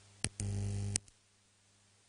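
A click, then about half a second of electrical mains hum through the sound system, ended by another click or two: the buzz of a microphone or cable being connected or switched.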